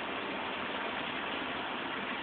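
Steady, even hiss with no distinct sounds in it.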